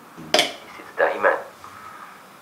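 A single sharp click as a phone handset is picked up, followed about half a second later by a short spoken word.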